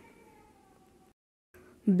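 Near silence: a faint fading room tone, a moment of dead silence, then a woman's narrating voice starting again near the end.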